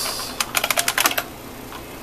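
Computer keyboard keys clicking as a short command is typed at a DOS prompt: a quick run of about seven keystrokes in under a second, ending with the Enter key.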